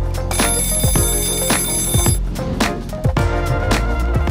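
Alarm clock bell ringing for about two seconds, starting just after the beginning, over background music with a steady beat.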